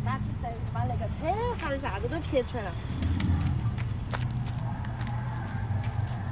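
Steady low hum of a car engine idling, under a child's high-pitched voice that talks in the first half.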